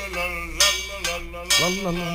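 Wordless, pitched voice sounds that waver in three stretches over a recorded AM radio broadcast.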